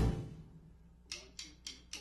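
The jazz band's playing cuts off and the last sound dies away in the room, then four evenly spaced sharp clicks, a little under four a second, count off the next, faster run of the passage.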